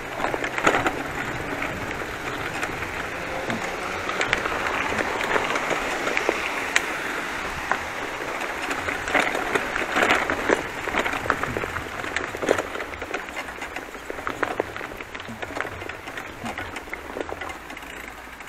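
Bicycle ridden over rough ground onto a dirt path covered in dry leaves: the tyres rolling and crackling over leaves and twigs, with frequent small clicks and knocks throughout.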